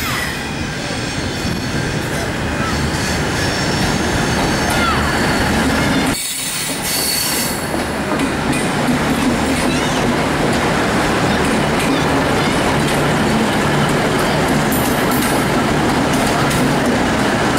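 V/Line VLocity diesel multiple unit running past close by, its diesel engines and wheels on the rails making a steady, loud noise with occasional high wheel squeal. The sound drops briefly about six seconds in.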